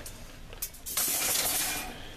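A couple of light clicks, then about a second of scraping, rustling noise from scrap and debris being shifted or stepped through.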